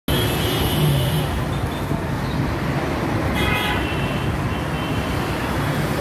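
Road traffic: a steady rumble of vehicle engines, with a vehicle horn sounding briefly about three and a half seconds in.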